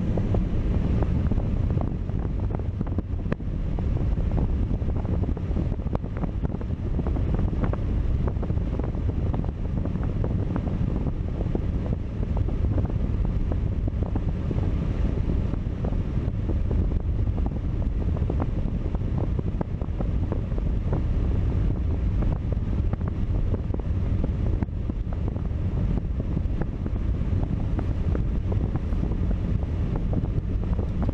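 Steady low in-cabin road rumble of a car driving on a snow-packed road, tyres and engine, with frequent small clicks and crackles.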